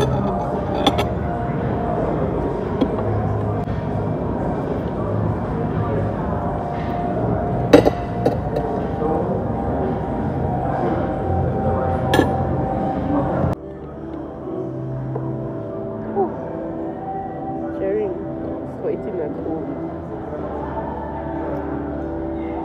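Restaurant background of music and indistinct chatter, with a few sharp clinks of metal cutlery, the loudest about eight seconds in. The background changes and drops abruptly a little past halfway.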